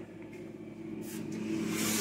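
Steady low hum of a Mabe no-frost refrigerator's compressor running, growing louder toward the end. The fridge barely cools, and the technician puts this down to a shortage of R600a refrigerant, since the compressor draws only about 0.6 A against 1.1 A rated.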